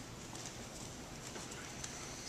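Faint footsteps of bare feet on a foam practice mat, a few light taps over steady room hiss.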